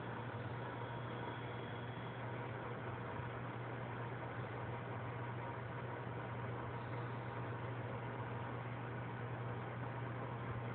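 Steady low hum of aquarium equipment under an even hiss, unchanging throughout.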